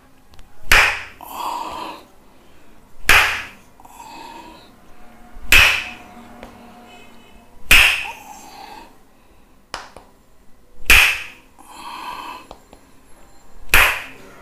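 Tok sen wooden hammer striking a wooden stake held against a man's back, giving sharp wooden knocks. Six strikes, about two to three seconds apart, each followed by a short fainter tail.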